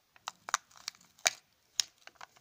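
Plastic toy capsule from a Kinder Egg being handled open, its paper leaflet peeled back: a few sharp plastic-and-paper crackles and clicks, the loudest just over a second in and near the end.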